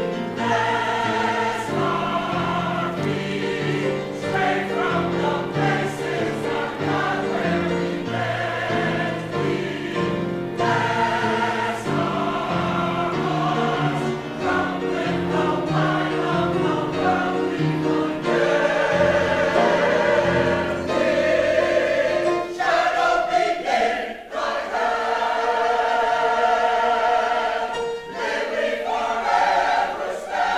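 Mixed choir of men's and women's voices singing a spiritual in full harmony; the lowest part drops out about two-thirds of the way through.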